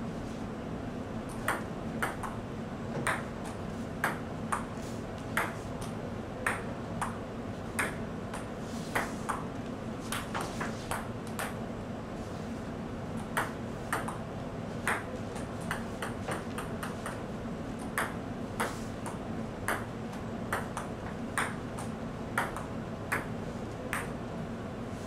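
A table tennis rally: the ball clicks sharply off the paddles and the table in an uneven rhythm, about one hit every half second to a second, with a quicker run of hits partway through. A steady low hum runs underneath.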